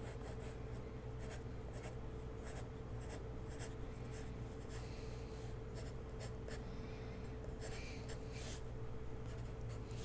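Pencil sketching on paper: quick, irregular scratchy strokes, over a steady low hum.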